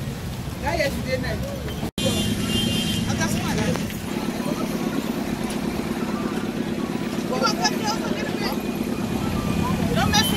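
Street noise: engines running and snatches of people's voices. About two seconds in the sound drops out for an instant, then goes on as a steady low engine hum with voices over it.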